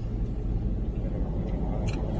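Steady low rumble of road and engine noise inside a moving state patrol car's cabin, with a brief hiss near the end.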